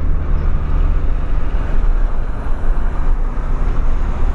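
Engine and road noise heard inside the cabin of a 2003 Ford Fiesta Supercharged on the move: a steady low drone with tyre hiss over it.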